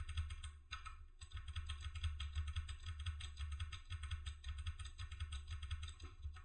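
Rapid keystrokes on a computer keyboard, typing a long string of hex digits into a command line, over a steady low hum.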